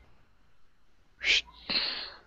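Mostly near silence, broken about a second in by a short sharp hiss and then a breathy exhalation from a person at the microphone.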